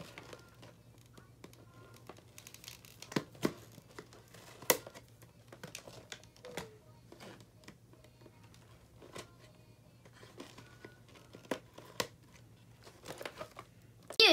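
Toy kit packaging being cut open with scissors and handled: scattered quiet snips, clicks and crinkling, the sharpest about a third of the way in, over a faint steady low hum.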